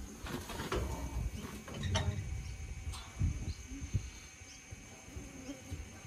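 Flies buzzing faintly around a cow, over low rumbling handling noise with a couple of light knocks.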